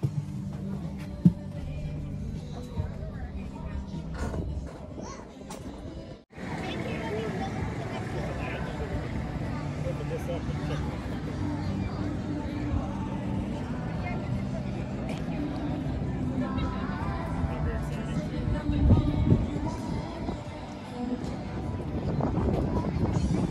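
Background music with people's voices faintly behind it, broken by a brief dropout about six seconds in.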